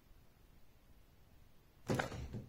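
Quiet room tone, then near the end a sudden loud rustle and crinkle of a clear plastic sleeve holding a printed picture as it is moved quickly.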